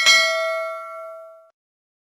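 Notification-bell sound effect: a single bright ding with several overtones that fades and is cut off sharply about one and a half seconds in.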